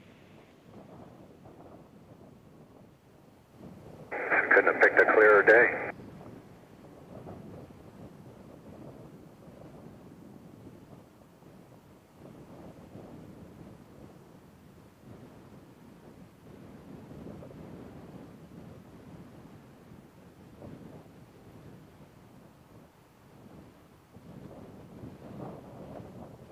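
A loud burst of about two seconds on a two-way radio channel, about four seconds in, with no words that can be made out. Otherwise faint steady hiss of the communications feed.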